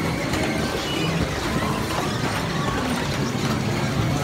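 Steady rumble and air noise of a spinning kiddie motorcycle carousel ride, heard from on board as it turns, with faint amusement-park sounds behind.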